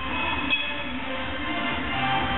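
Background music, loud and dense, with one brief click about half a second in.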